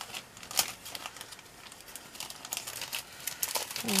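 Clear plastic packaging bags being handled and gathered up, crinkling in irregular bursts, loudest about half a second in.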